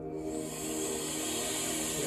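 Slow ambient music of sustained tones, joined just after the start by a long, hissing breath from the breathwork track that carries on past the end.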